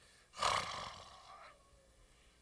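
A person's short, breathy vocal exclamation, about a second long, falling slightly in pitch.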